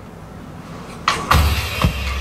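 Film trailer soundtrack: nearly quiet for about a second, then a sudden low boom that holds on as a deep rumble with hiss, a music hit under the title card.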